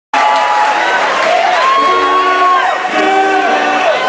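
Concert crowd cheering, with many overlapping whoops and yells.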